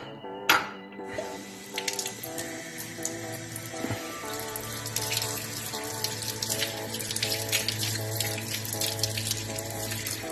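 Tap water running into a sink and splashing over a split red claw crayfish half being rinsed under the stream. The water starts about a second in, after a sharp click, and background music plays throughout.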